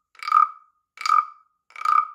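Wooden frog rasp (guiro) played by scraping the wooden stick along the ridges on the carved frog's back: three short rasping croaks, about one every three-quarters of a second, sounding a lot like a frog's ribbit.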